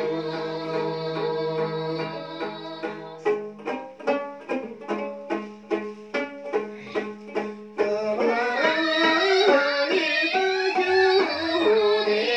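A group of women singing together to a long-necked plucked lute, a Tibetan dranyen. A held sung note fades in the first few seconds, then the lute plays alone in quick, evenly repeated strums. The voices come back in about two-thirds of the way through.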